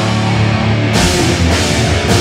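Live heavy metal band playing loud: distorted electric guitars, bass guitar and drum kit together. About a second in, the sound grows brighter in the top end.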